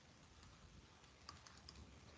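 Near silence: a faint low hum with a few faint, light clicks in the second half, from a stylus tapping on a pen tablet as handwriting is put down.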